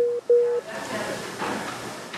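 Two short beeps at one steady pitch, the incoming-call tone in a call-center agent's headset, followed by the steady hiss and faint voices of a busy call-center floor.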